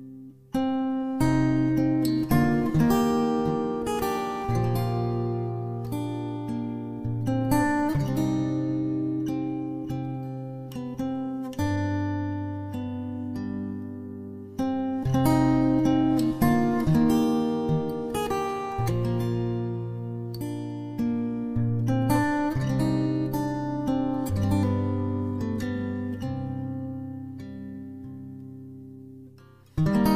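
Acoustic guitar music: chords picked and strummed, each left to ring before the next change. It begins about half a second in and fades out near the end.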